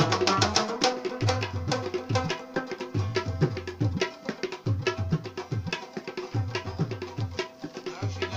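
Pashto rubab instrumental with tabla: a fast plucked rubab melody over a tabla rhythm with repeated deep bass strokes.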